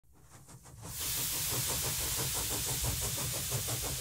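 A steady hiss with a fast, even pulsing under it, fading in over the first second.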